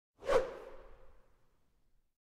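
A single whoosh sound effect on an animated title card, peaking about a third of a second in, with a ringing tail that fades away over about a second.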